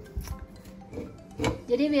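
Background music with soft knocks of vanilla ice cream being handled and pushed into a plastic blender cup, one sharper knock about one and a half seconds in. A woman starts speaking near the end.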